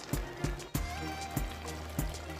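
Background music with a steady beat, about three beats a second.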